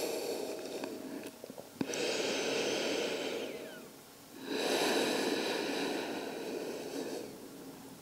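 A person breathing slowly: two long breath sounds, the first about two seconds in and a longer one from about halfway through.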